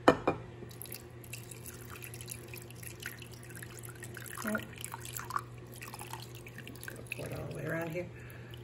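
Water being poured into a slow-cooker crock of soaked merino roving, trickling and dripping irregularly, with a sharp knock at the very start.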